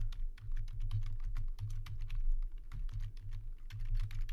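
Computer keyboard typing: a quick, continuous run of keystroke clicks over a low steady hum.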